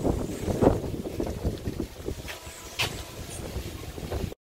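Low, uneven rumble of a utility cart driving away over paving, mixed with wind buffeting the microphone; two short clicks sound a little past halfway.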